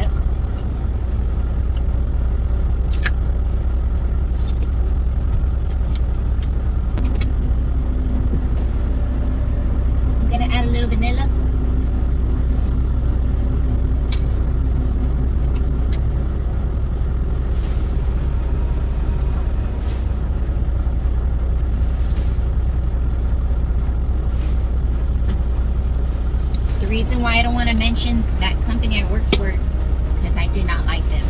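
Steady low rumble of a parked semi truck's idling diesel engine, heard inside the cab. Scattered clicks and knocks of things being handled in the cab come over it.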